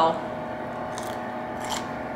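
A few faint crunches of someone chewing a breaded air-fried chicken tender, over a steady low hum in the room.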